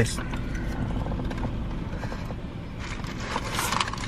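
Close-up eating: chewing over a steady low hum inside a car, with a burst of crisp crackling near the end.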